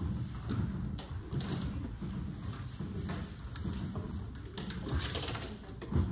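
Roomful of people in a classroom: a low background murmur with scattered handling noises, and a short rustle about five seconds in.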